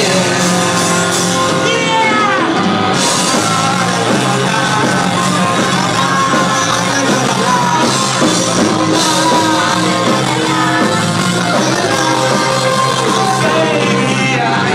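Live rock band playing loud and without a break: electric guitars and drums, with a singer yelling into the microphone.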